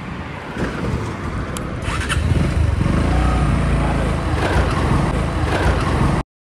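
Motorcycle being ridden on a road: engine running under loud wind noise on the microphone, growing louder about two seconds in.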